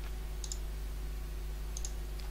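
Steady low electrical hum with two faint short clicks, one about half a second in and one near the end.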